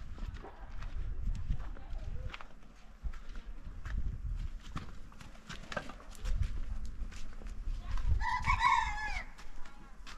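Footsteps and shuffling on stony ground, then a rooster crowing once about eight seconds in, the loudest sound, its pitch dropping at the end.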